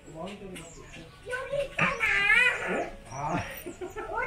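A person's voice, soft at first, then a high, wavering vocal sound about two seconds in and a short falling one later.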